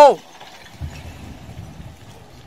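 Distant rockfall crashing down a cliff face into water: a low, muffled rumble that starts about a second in and slowly fades.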